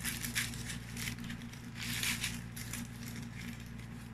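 Chocolate bar wrapper crinkling and rustling in short, irregular crackles as it is peeled open by hand, over a steady low hum.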